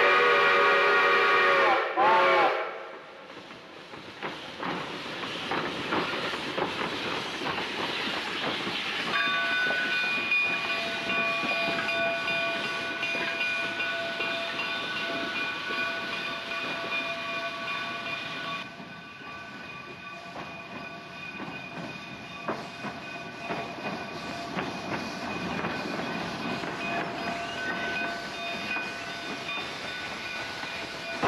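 Baldwin narrow-gauge steam locomotive sounding its steam whistle: a long blast that ends about two seconds in, then a short blast whose pitch sags at the end. After that comes the locomotive's steam and running sound, with faint thin steady tones over it from about nine seconds in.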